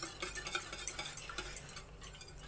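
Wire whisk beating an egg and milk batter in a bowl: rapid, irregular light clicks and swishes as the wires strike the bowl.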